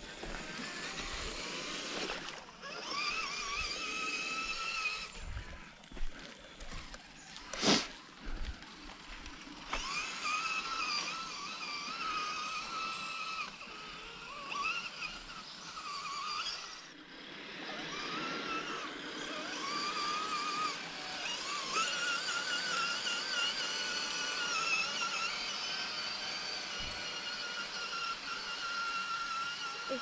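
Electric motors and drivetrains of two radio-controlled scale crawler trucks, a Redcat Gen8 Scout II and a Traxxas TRX-4 Sport, whining as they drive, the pitch wavering up and down with the throttle. There is a sharp click about eight seconds in and a few dull knocks.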